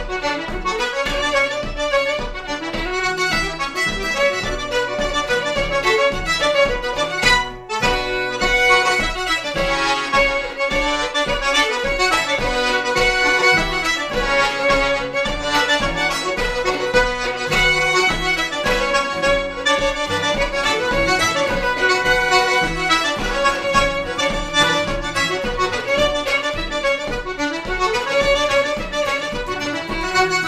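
Button accordion, fiddle and strummed acoustic guitar playing a lively traditional dance tune together, with the accordion on top. The music drops out briefly about seven and a half seconds in, then carries on.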